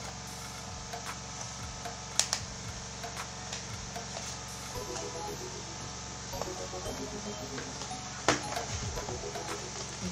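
Steady low room hum with light handling noise from hand-stitching an elastic headband onto a fabric-covered cardboard disc with needle and thread. Two sharper clicks, about two seconds in and about eight seconds in.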